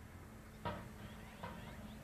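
Faint outdoor background with a low steady hum, and two faint brief sounds: one a little under a second in and a softer one about a second and a half in.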